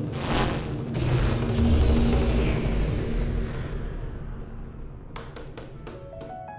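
Cinematic transition sting: two heavy percussive hits in the first second, with a deep booming rumble that slowly dies away. Near the end comes a quick run of four or five light ticks.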